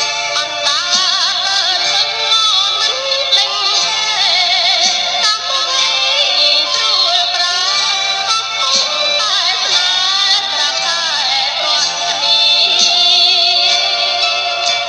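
A woman singing a Khmer song over instrumental backing, her held notes wavering with vibrato.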